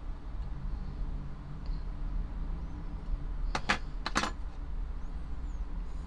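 A steady low hum with four quick sharp clicks in two close pairs about three and a half seconds in, from small diecast toy car parts being handled and tapped together.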